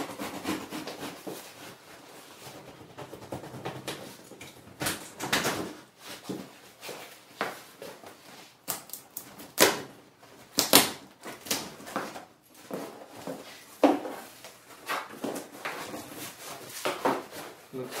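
Cardboard shipping box being opened by hand: packing tape pulled and torn, cardboard flaps rubbing and rustling, with irregular sharp cracks and knocks, the loudest about halfway through.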